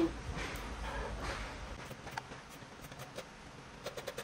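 Scissors cutting through folded fabric: soft cutting strokes in the first second and a half, fainter after that, with a few light clicks of the blades.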